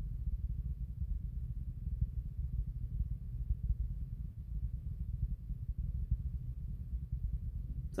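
A low, steady rumble with nothing higher above it.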